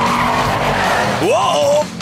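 Cartoon tyre-skid sound effect: a monster truck's tyres sliding on the road, a hissing skid that lasts about a second over background music. Near the end a short vocal exclamation rises and falls in pitch.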